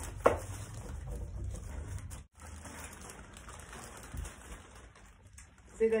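A sharp knock, then foil-lined crisp packets crackling and rustling as a household iron is worked over them to heat-fuse them; the sound breaks off briefly about two seconds in and resumes.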